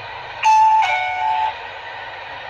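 A two-note electronic signal: a loud high steady tone, then a slightly lower one, ending abruptly after about a second.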